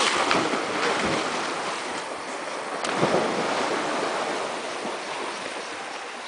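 Splashing and rushing water of a fast stream as a swimmer climbs out. The noise is loudest at the start and eases off, with a short surge about three seconds in.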